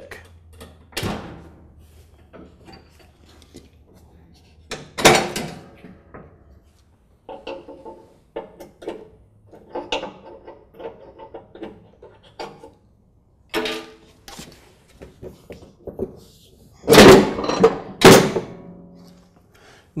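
Metal clicks and knocks from the pins that secure the rear of a Troy-Bilt Pony lawn tractor's mower deck being worked out with pliers. The knocks are scattered and irregular, with a run of small clinks in the middle and two loud knocks about a second apart near the end.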